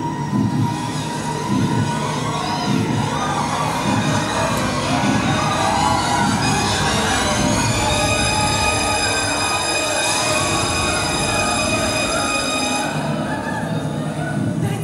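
A steady rumbling roar of a stage fire effect played over the theatre's sound system. About eight seconds in, high sustained musical tones join it.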